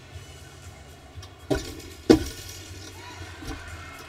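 Two thuds of a gymnast's feet landing on a balance beam, about half a second apart, the second much louder.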